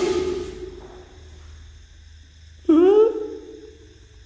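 A man calling out with long drawn-out shouts, twice: one dying away at the start and another about three seconds in, each rising in pitch, held, then fading.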